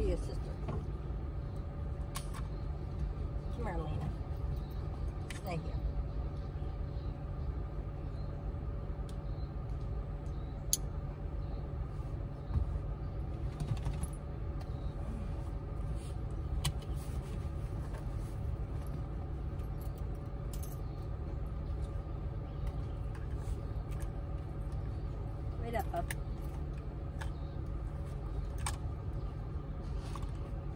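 Minivan engine idling steadily, heard from inside the cabin, with scattered clicks and rustles as dogs and a person climb in, and a short "up, up" near the end.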